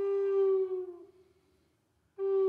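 A recorder holding one steady note, which sags a little in pitch and dies away about a second in.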